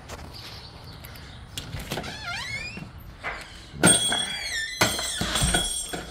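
A door being opened: a squeak that glides up and down in pitch about two seconds in, then a sharp clunk of the latch near four seconds and more squeaking as the door swings.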